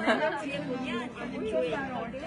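Several people talking over one another: overlapping conversational chatter from a small group standing close together.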